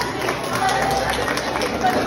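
Indistinct chatter of young voices in a hall with scattered small clicks and knocks, during a break in the music's bass beat.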